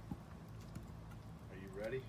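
Wood fire in a fire pit crackling faintly, a few soft pops over a steady low hum. A short voice-like sound comes near the end.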